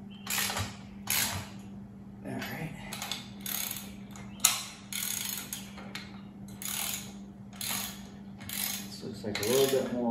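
Socket ratchet wrench clicking in a run of short back-and-forth strokes, roughly one every half second to a second, as a bolt is tightened on the steel arch's winch mount. There is one sharp, louder click about halfway through.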